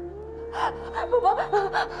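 A woman crying: a run of gasping, breathy sobs with broken, pitch-bending vocal sounds in the second half, over a held note of background music.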